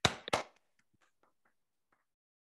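Two short, sharp knocks about a third of a second apart, then near silence.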